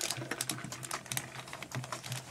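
A fast, irregular run of light clicks and taps, like keys being typed.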